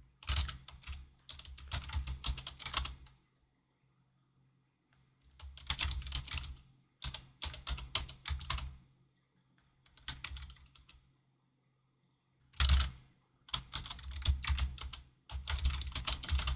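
Computer keyboard typing in several bursts of quick keystrokes, separated by silent pauses of a second or two.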